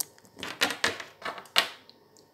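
A few light clicks and rustles of hands handling things close to the microphone, with a sharper click about a second and a half in.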